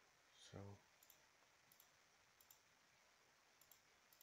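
Faint computer mouse clicks, four press-and-release pairs a little under a second apart, as radio buttons in a GUI are selected to switch LEDs on. A brief hum from a person about half a second in.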